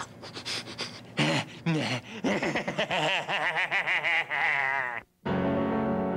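A man's wordless vocalizing and panting, its pitch wavering faster and faster, breaks off suddenly about five seconds in. After a brief gap, an upright piano starts playing.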